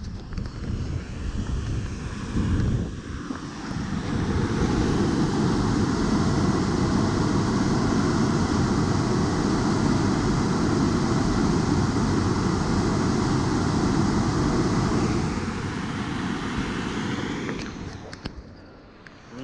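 Strong flow of water rushing through an underground drain shaft, heard from its opening as a loud, steady rush. It grows louder about four seconds in and fades near the end.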